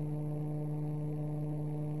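Steady electrical hum with several overtones, unchanging throughout.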